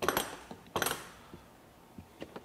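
Latches of a RIDGID 22-inch plastic tool organizer being flipped open: two sharp clacks, the second about three-quarters of a second after the first.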